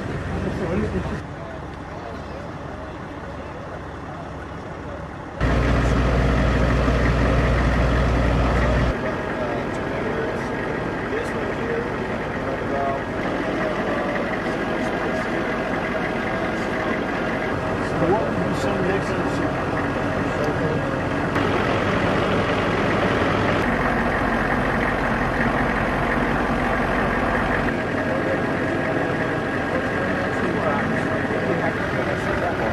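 Truck engine idling with indistinct men's voices over it. The background changes abruptly several times, and the engine is loudest between about five and nine seconds in.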